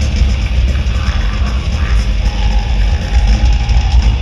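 Live three-piece metal band (distorted electric guitar, bass guitar and drum kit) playing loudly without a break.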